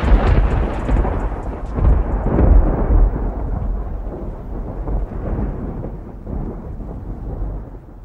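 A loud, deep, thunder-like rumble that rolls on with a couple of swells about two seconds in, then fades away gradually.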